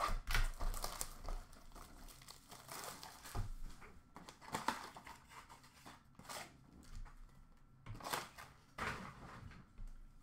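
Cardboard box of Upper Deck Extended Series hockey cards being torn open and its card packs unwrapped, the wrappers crinkling and tearing in short irregular rasps.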